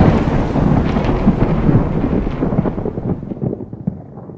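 Intro sound effect: the rumbling, crackling tail of a big boom, dying away steadily with its high end fading first.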